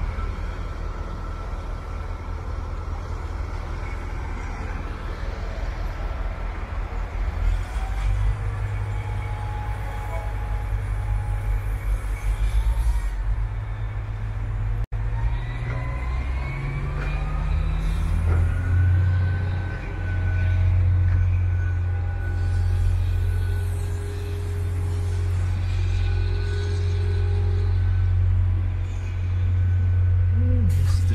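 Heavy diesel engines running with a steady low rumble that grows stronger about a quarter of the way in and again past the middle, with a thin rising whine around the middle.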